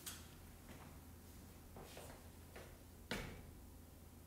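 Near silence in a quiet room, broken by a few faint clicks and taps, with one sharper click about three seconds in.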